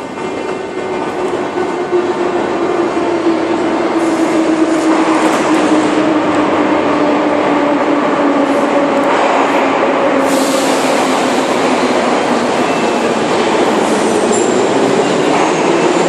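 Moscow Metro train running in the station, loud, building up over the first few seconds and then steady, with a motor whine that falls slowly in pitch.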